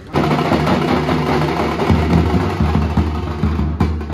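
Dhol-tasha band drumming: large barrel dhols beaten with sticks in a loud, fast, steady rhythm. It starts suddenly, with a brief break near the end.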